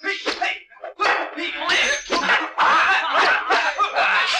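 Men's voices shouting, with sharp slap-like hits, loud and dense from about a second in.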